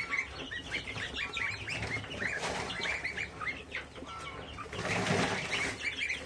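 A flock of young goslings and chicks peeping continuously, many short high calls overlapping. Two brief bursts of rustling come through, about two and a half seconds in and again near the five-second mark.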